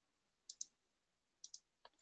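Faint computer mouse clicks: a press-and-release pair about half a second in, another pair about a second and a half in, and a single click just before the end, over near silence.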